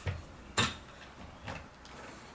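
Wooden Majacraft Little Gem spinning wheel being handled as its drive band is taken off: a sharp click about half a second in and a softer knock about a second later.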